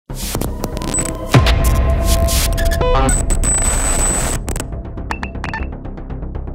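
Cinematic title sound design: stuttering bursts of digital static and electronic tones over a low hum, with one deep boom hit about a second in. Near the end it thins to a run of quick, even ticks.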